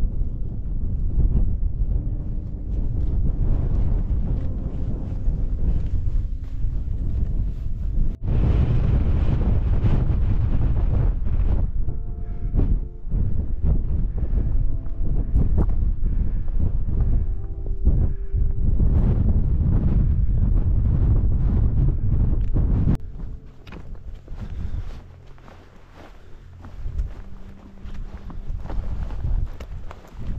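Wind buffeting the microphone in gusts, a heavy low rumble that eases sharply about three quarters of the way through.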